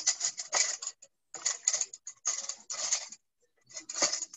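Hands kneading a flour-and-water dough in a stainless steel bowl: about four rubbing, scraping strokes against the bowl with short pauses between.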